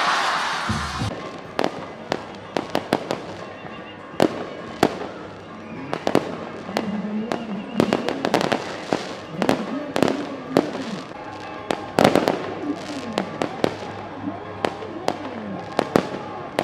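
Fireworks going off in a long irregular series of sharp cracks and bangs, sometimes several close together, the loudest about twelve seconds in.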